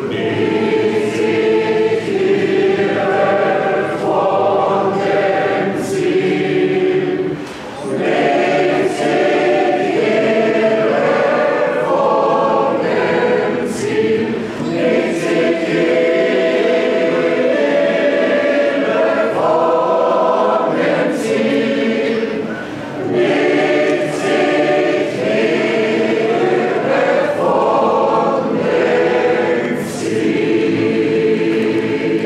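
Large mixed choir of men's and women's voices singing a sacred song in full chords without accompaniment, pausing briefly between phrases about eight and twenty-three seconds in.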